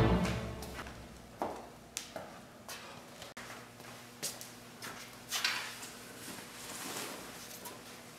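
A music track ends at the very start, dying away within about a second. Then a quiet garage room with scattered footsteps on a hard floor, a few light knocks and brief cloth rustles as a suit jacket is taken off a rack and put on.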